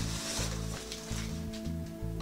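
Tissue paper crinkling and rustling as hands dig through a packed box, over steady background music.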